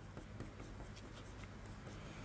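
Faint scratching of a thick graphite pencil lead on lined paper as letters are written in short, irregular strokes.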